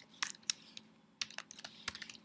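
Typing on a computer keyboard: a quick, irregular run of keystrokes with a short pause near the middle.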